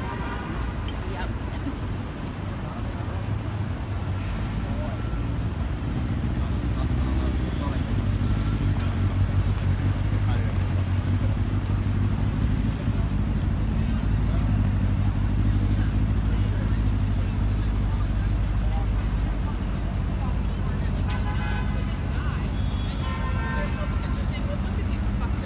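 City street ambience: a steady rumble of road traffic, with passers-by talking briefly near the start and again near the end.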